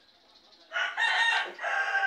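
A rooster crowing: one drawn-out crow beginning a little under a second in, with a short break midway and a held final note.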